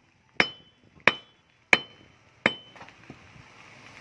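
A rusty square steel tube striking a quartz-veined ore rock four times, roughly two thirds of a second apart, each blow a sharp clink with a brief metallic ring.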